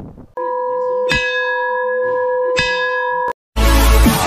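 Edited intro sound effect: a steady ringing tone, struck afresh twice about a second and a half apart, that cuts off suddenly. Loud electronic dance music with a heavy beat starts right after, near the end.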